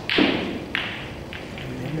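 Snooker balls clacking as the cue ball splits the pack of reds: one loud clack just after the start, then lighter clicks about half a second and a second later as the reds scatter. A man's voice starts near the end.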